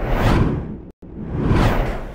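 Two whoosh transition sound effects, one after the other, each swelling and fading over about a second, with a brief silent break between them.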